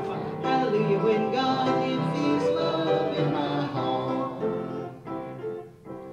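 Church congregation singing a hymn with instrumental accompaniment, the singing fading out about five seconds in.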